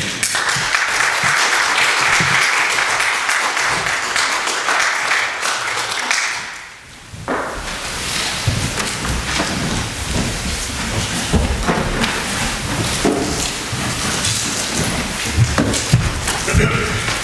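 Congregation applauding for about six and a half seconds, then a brief lull and a rougher stretch of shuffling and movement in the room.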